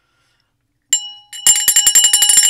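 Small hand bell rung by shaking: one strike about a second in, then a fast run of strikes, several a second, with clear ringing tones.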